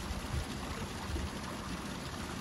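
Waterfall and running stream: a steady rush of water.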